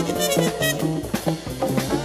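Jazz-funk band recording: drum kit with cymbal strokes over a moving bass line, with brass playing. The band thins out slightly in the second half.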